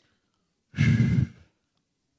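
A man's short sigh, about a second in, lasting about half a second.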